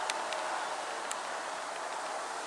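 Steady noise of a lorry on a distant highway, with leaves rustling in the wind.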